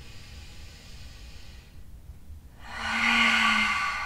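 A woman drawing a deep breath in, faint and hissy, then about two and a half seconds in letting it out through the open mouth as a loud, drawn-out sigh with her voice sounding in it.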